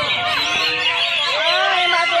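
Several caged green leafbirds (cucak hijau) singing at once in a contest: a dense tangle of overlapping whistled notes, many of them arching up and down in pitch.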